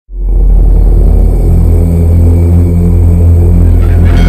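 Deep, loud rumbling drone that opens an intro music cue, swelling in within the first half second and holding steady, with brighter higher sounds entering just before the end.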